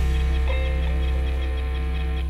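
Live band music ringing out on sustained chords and a held low bass note, with the drums stopped. A short gliding note comes about half a second in.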